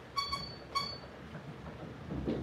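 Two short, high-pitched squeaks about half a second apart, over quiet room tone.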